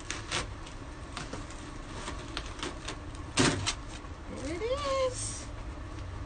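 Adhesive silk-screen transfer being peeled up off a freshly pasted board: a few light clicks and crackles, then one louder sharp snap about three and a half seconds in. A short rising vocal exclamation follows near the end.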